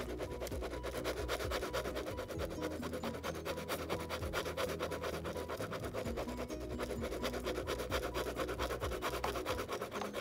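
Pen tip scratching rapidly back and forth on paper while colouring in, several quick strokes a second in a steady run.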